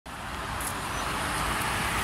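City street traffic: cars passing with a steady hiss of tyres and engines that grows slowly louder.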